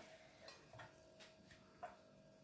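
Near silence with a few faint ticks and clicks: a kitchen knife cutting through raw pork belly ribs and touching the end-grain wooden cutting board, the clearest click near the end.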